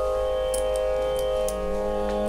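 Steady shruti drone for Carnatic-style devotional singing: several held notes sounding together without a break. A lower held note joins about one and a half seconds in, and a few faint ticks sound over it.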